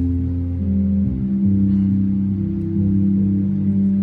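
Live instrumental music with no singing: sustained low notes held like chords, shifting to a new chord about a second in.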